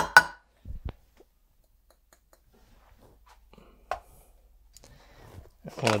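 Light knocks and clinks from a stainless steel coffee dosing cup being handled. There are two sharp clicks at the start, two soft thumps just under a second in, and one more click near four seconds, with quiet in between.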